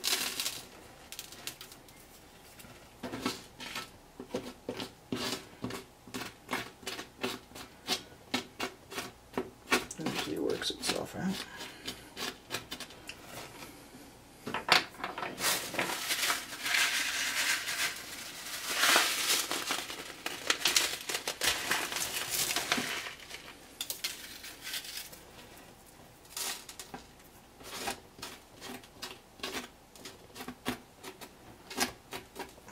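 A pencil tip and fingertips scraping and tapping loose rock-debris scatter into place in glue along the base of a model wall, a rapid string of small gritty clicks and scratches. In the middle comes a longer spell of continuous rustling and scraping.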